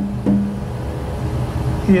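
A steady low hum, with a faint click about a quarter of a second in.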